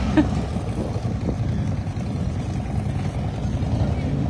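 Motorcycle engines running close by, a steady low rumble, with a short laugh just after the start.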